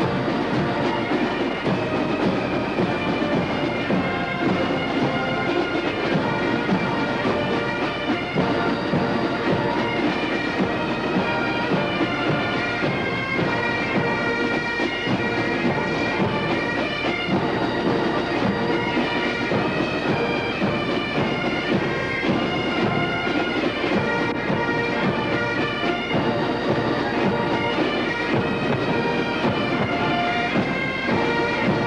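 Massed Highland bagpipes playing a tune over marching bass and side drums of a pipe band.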